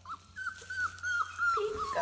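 A four-week-old puppy whining: a string of short, high-pitched whines running almost without a break, with a brief lower whine near the end.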